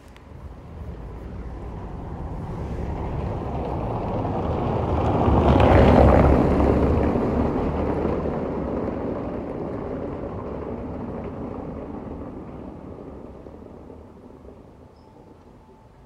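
A motor vehicle passing by out of sight: a rumbling, hissing noise swells, peaks about six seconds in and then slowly fades away.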